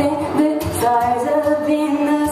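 A woman singing in long held notes, accompanied by strummed acoustic guitar.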